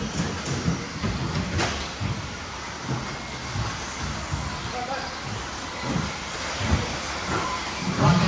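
Electric 2WD RC buggies racing on an indoor artificial-turf track: the steady running noise of their motors and tyres, with a sharp knock about one and a half seconds in.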